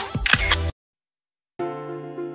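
Background music: an upbeat track with a beat cuts off suddenly less than a second in. After nearly a second of silence, a gentler track of held notes begins.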